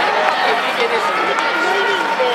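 Baseball stadium crowd in a domed ballpark: many spectators talking at once in a steady hubbub, with nearby voices close to the microphone.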